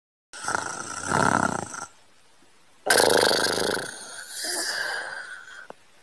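Snoring sound effect: two long snores with a quiet gap of about a second between them.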